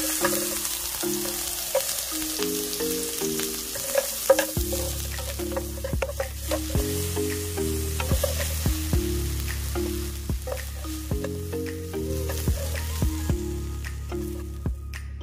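Sliced onion sizzling as it stir-fries in hot oil in a nonstick wok, with scattered clicks and scrapes of silicone tongs tossing it, over background music.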